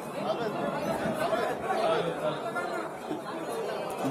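Several people talking at once: a steady murmur of overlapping voices in a room.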